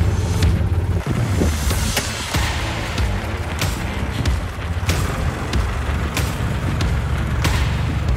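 International Harvester tractor engine running with a deep, steady note, the pattern growing more uneven about a second in as it is worked.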